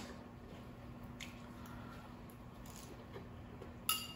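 Faint chewing and small mouth sounds of a person eating, with a few soft clicks and one sharper click near the end, likely the fork.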